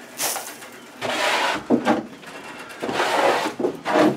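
Brush sweeping wood shavings and straw bedding across the wooden floor of a rabbit pen into a dustpan, in three rough strokes of under a second each.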